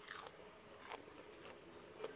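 Faint crunching and chewing of a mouthful of raw green leaves: a few soft, short crunches spread over the two seconds.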